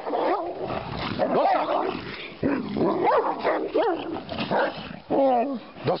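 Two young Šarplaninac and Karabash shepherd dogs wrestling, with growls and short high yelps and whines, several times over; the loudest run of yelps comes about five seconds in.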